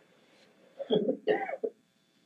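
A man's voice making a short vocal sound of about a second, starting a little under a second in, between near-silent pauses.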